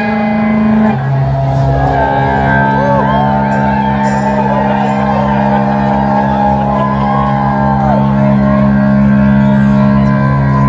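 Guitar sustaining a low held chord through the amplifier, with a crowd cheering and whooping over it for several seconds.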